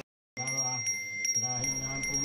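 A Hindu priest's small brass hand bell (genta) rung continuously, giving a steady high ring that starts about a third of a second in.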